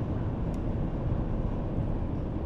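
Steady road noise heard from inside a moving car: an even low rumble of tyres and engine.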